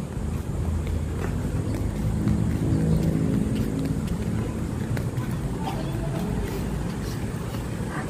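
Road traffic: a motor vehicle's engine running close by, loudest about two to four seconds in, over a steady low rumble.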